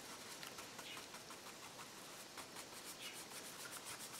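Faint, irregular scratchy ticks of paintbrush bristles being worked back and forth over a painted surface, an angle brush floating dark shading out to soften its edge.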